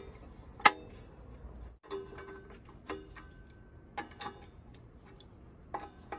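Sharp clicks and light taps of hard parts being fitted together as the fan guard is seated on a turbo broiler's head. The loudest click comes about half a second in, then a scattering of lighter taps about a second apart.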